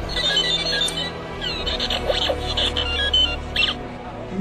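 R2-D2 droid beeps and whistles: rapid high electronic chirps in short runs, with a few quick pitch sweeps, over a low steady music bed.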